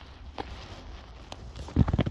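Handling noise: faint rustling with a couple of light clicks, then a dull thump near the end.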